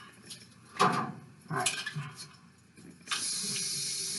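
A few light handling clicks and rustles, then about three seconds in, water starts running from a bathroom sink tap with a steady hiss.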